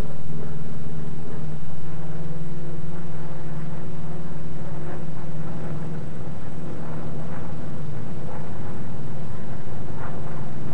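Grumman F8F Bearcat's radial piston engine and propeller in flight: a steady low drone that holds at a fairly even level.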